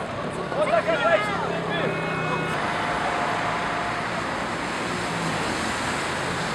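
Road traffic: passing vehicles' engine and tyre noise, which swells into a steady rush from about two and a half seconds in as a van goes by close. Voices shout briefly at the start.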